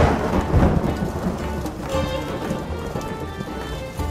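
Thunder and rain sound effect: a sudden thunderclap right at the start rolling into a low rumble over about a second, then steady rain, with music playing underneath.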